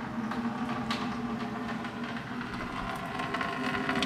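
Water draining from a CNC plasma table's water tray and falling in a thin stream into a plastic bucket. It runs steadily over a low hum.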